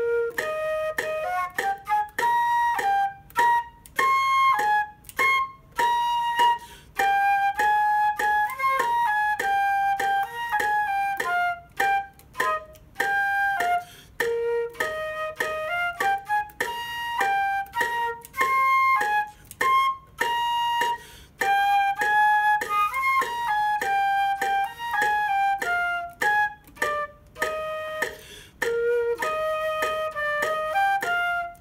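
Solo concert flute playing a simple tune in three beats to the bar, moving through short, separate notes. A metronome clicks steadily underneath at about 100 beats a minute.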